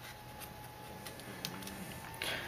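Faint handling noise as a 30-pin dock connector is pushed into an iPod touch, with one small click about one and a half seconds in.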